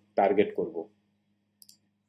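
A single faint computer mouse click about one and a half seconds in, opening a link, over a faint steady electrical hum.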